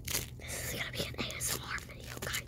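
Crackling and rustling as hands squeeze and pull at a lump of pink bead-filled slime: a quick string of short, sharp crackles.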